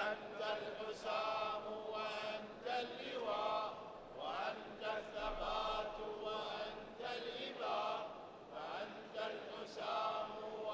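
Quiet men's voices chanting in drawn-out, wavering phrases of about a second each.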